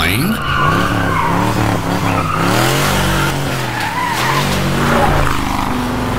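1969 Ford Mustang's V8 revving up and down repeatedly, with its tyres skidding and squealing as the car is thrown around on tarmac.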